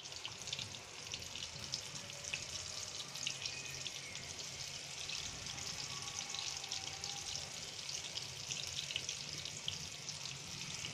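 Breaded chicken cheese balls deep-frying in hot oil in a wok: a steady sizzle full of small crackling pops.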